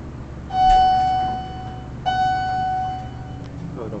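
Elevator car chime of a 1981 Otis hydraulic elevator sounding twice at the same pitch, each ding ringing out for over a second. A double chime is the usual US elevator signal that the car will travel down.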